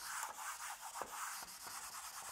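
Handheld whiteboard eraser rubbing back and forth across a whiteboard, wiping off marker writing in a quick run of strokes.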